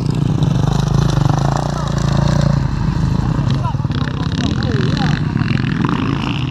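Off-road enduro motorcycle engine running steadily, heard from a helmet-mounted camera close to the rider.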